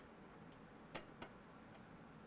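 Near silence with two small clicks about a second in, a quarter second apart: a metal seam guide being fitted onto the bed of a coverstitch machine.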